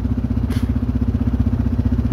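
A motor vehicle's engine running steadily with a fast, even low pulse.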